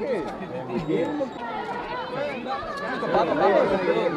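Several people talking at once around the microphone, their voices overlapping into a jumble of chatter that gets louder near the end.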